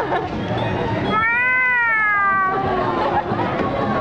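A single long, high-pitched vocal wail lasting about a second and a half, its pitch rising and then falling, over crowd chatter.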